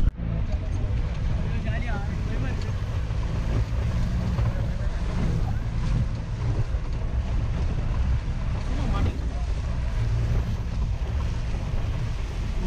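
Low, steady rumble of a Tata Sumo's engine and tyres on a rough, rocky dirt road, heard from inside the cabin, with wind noise on the microphone.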